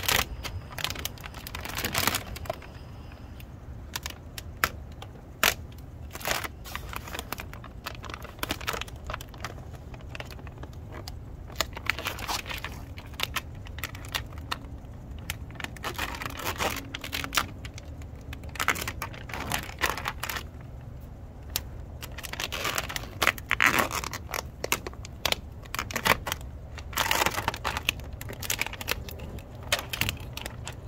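Clear plastic transfer film crinkling and crackling in irregular bursts as hands handle it and peel it back from a vinyl decal, over a steady low hum.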